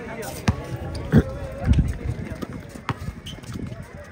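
Basketball bouncing on an outdoor hard court as a player dribbles, a few irregular bounces with the loudest about a second in, over players' voices.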